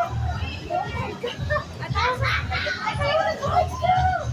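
Several people's voices talking and calling out at once, with no clear words, over a low background rumble.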